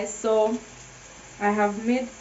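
A woman speaking in two short bursts, over a faint steady background.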